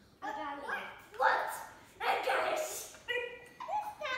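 Young children's excited high-pitched squeals and shrieks, five short outbursts with no clear words, the loudest a little over one and two seconds in.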